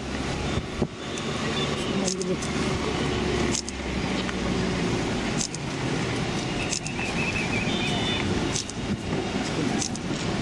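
Engines of a slow-moving convoy of Mahindra Scorpio SUVs running as they pull up, under indistinct voices of people standing around.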